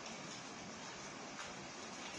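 Steady faint hiss of room tone and recording noise, with no distinct sound event.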